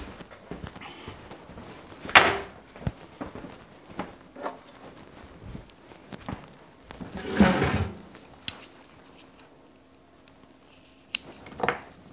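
Knocks, thuds and handling noises of someone fetching and handling a length of electrical wire in a small room. There is a sharp thunk about two seconds in, a rustling scrape lasting about a second around seven seconds in, and a couple of clicks near the end.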